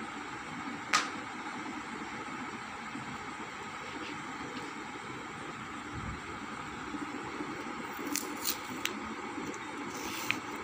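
Handling noise over a steady background hiss: one sharp click about a second in, and a few lighter ticks near the end.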